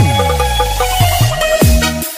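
Indonesian 'jedag jeduk' style electronic DJ dance remix: a bass sweep glides down at the start under a held synth note, and hard kick drums come back in near the end.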